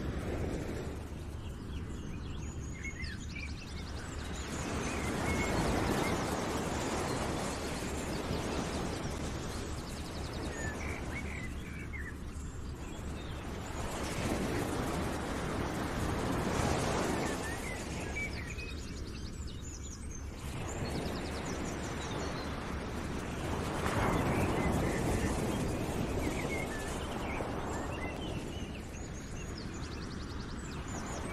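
Nature ambience: a rushing noise that swells and fades every several seconds, like surf rolling in, with scattered bird chirps over it.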